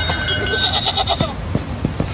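A farm animal calling.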